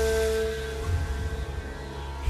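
Background music: a held note over a low, steady bass drone.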